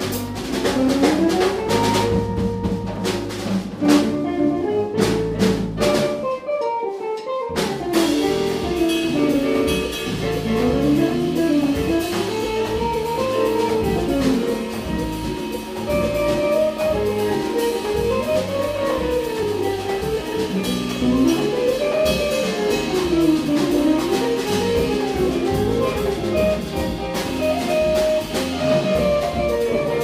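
Latin jazz quintet playing: electric guitar, stage piano, electric bass, drum kit and congas. About six seconds in, the low end drops out for a second or so before the full band comes back in.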